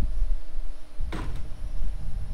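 A brief scrape of metal parts being handled on a steel workbench, rising in pitch about a second in, over a low steady rumble and a faint hum.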